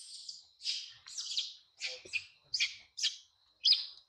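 A series of short, high-pitched squealing animal calls, about eight in four seconds, each sweeping downward and getting louder toward the end. A steady high drone runs underneath.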